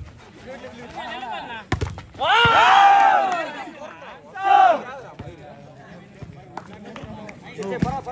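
A sharp smack of a volleyball being struck about two seconds in, followed by a long loud shout and a second shorter shout a second later. Another sharp hit comes near the end, with low chatter between.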